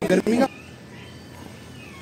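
A voice for about half a second at the start, then only a faint, steady background hum of the surroundings.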